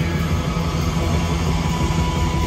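Loud live heavy psychedelic rock: distorted electric guitar, bass and drums blended into one dense, steady wall of sound with heavy low end.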